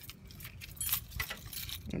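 Keys jangling in a hand: a scatter of light metallic clinks.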